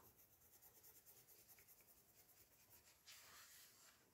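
Very faint scratching of a coloured pencil on a colouring-book page, a little louder for a moment about three seconds in; otherwise near silence.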